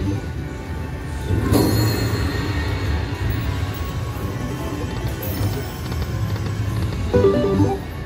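Fu Dai Lian Lian video slot machine playing its game music and jingles as the free-games feature finishes and the win is added to the credits. A louder burst of sound comes about a second and a half in.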